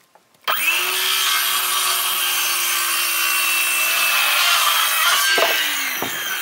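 Handheld electric power saw cutting an angled end on a wooden exterior wall board. The motor starts about half a second in and runs steadily through the cut, and near the end its whine falls in pitch as it winds down.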